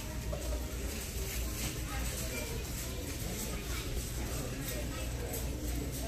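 Large store's ambience: distant, indistinct voices over a steady low hum.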